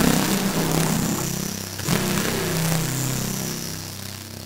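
Dark ambient noise music: a harsh wash of hiss bursts in suddenly over low droning tones, swells again about two seconds in, then slowly fades.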